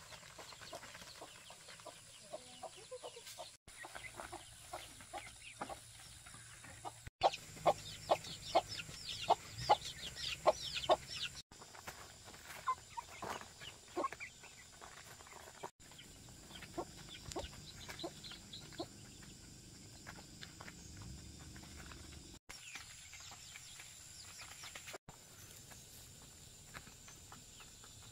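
Domestic chickens clucking and pecking at feed on a plastic tarp, with a quick run of sharp pecking taps about two or three a second near the middle.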